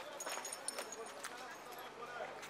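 Voices of several people talking and calling out amid street commotion, with irregular sharp clicks and knocks.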